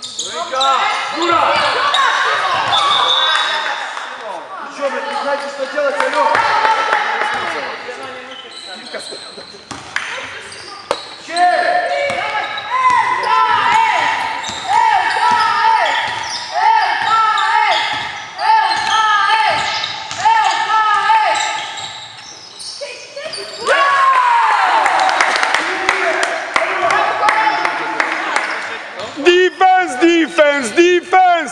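Basketball game in a sports hall: spectators shouting and chanting, with the ball bouncing on the court.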